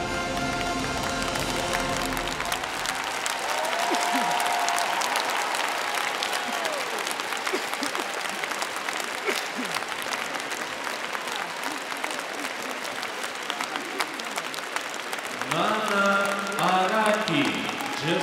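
Large arena crowd applauding at the end of a figure skating program. The program's music fades out in the first couple of seconds, sustained applause follows, and a man's voice comes in over it near the end.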